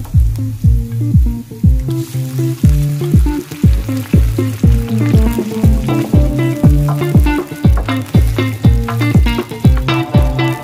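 Background music with a steady beat of about two kicks a second, its higher notes growing busier halfway through. Underneath it, onions and garlic sizzle in hot oil in a pan, then a sauce bubbles in the pan.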